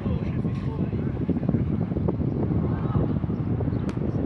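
Distant, indistinct voices over a steady rumble of wind on the microphone, with a single sharp knock near the end.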